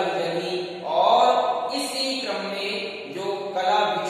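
A man talking in Hindi, lecturing without pause.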